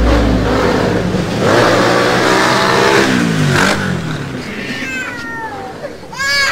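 A swelling whoosh with gliding tones that rise and then fall away. Near the end an infant starts to cry in short wailing arcs.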